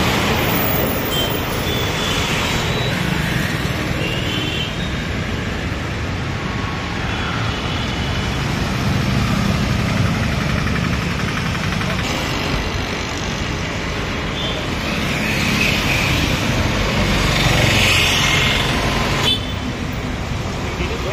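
Road traffic going by: motorbikes, cars and a three-wheeled goods carrier passing close over a steady traffic hum, growing louder near the end.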